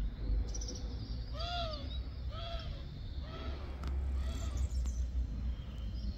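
A crow cawing four times, about a second apart, each caw weaker than the last. Faint high chirps of small birds and a low background rumble run underneath.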